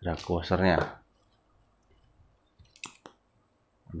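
A few short, sharp clicks of small metal parts from a spinning reel's spool being handled and taken apart, about three seconds in.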